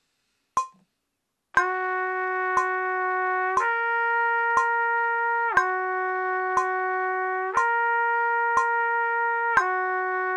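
A metronome ticks once a second at 60 beats a minute. About a second and a half in, a trumpet enters with a breath-started note and slurs back and forth between two long notes a major third apart, changing every two beats.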